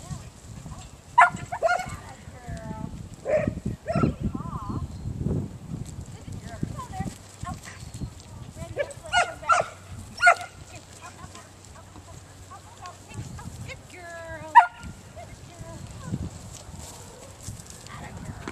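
Briard herding dog barking in short, sharp bursts, a few barks at a time with gaps of several seconds between them.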